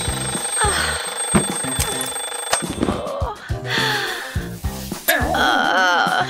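Background music, joined about five seconds in by a twin-bell alarm clock ringing with a fast, rattling ring.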